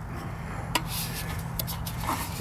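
Light handling noise as the feeder tube is held and turned: a few soft clicks and rubs, the clearest about three quarters of a second in and a few more near the end, over a low steady hum.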